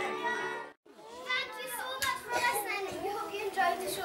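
The last held chord of a song breaks off suddenly under a second in, then many children's voices talk and call out at once.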